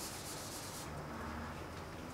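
Handheld whiteboard eraser wiping marker off a whiteboard, a faint rubbing that stops a little under a second in.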